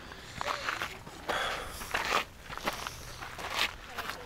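Footsteps on a loose path of volcanic gravel, a run of irregular crunching steps.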